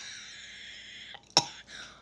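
A woman's breathy hiss as chili spice hits her throat, lasting about a second, then a short sharp cough about a second and a half in.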